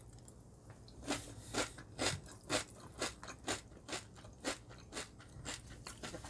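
A person chewing a mouthful of crispy extruded-rice protein muesli in milk, crunching steadily about twice a second.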